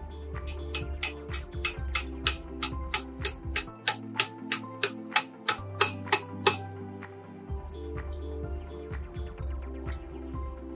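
Background music with a bass line and a steady percussive tick, about three beats a second, that stops about two-thirds of the way through.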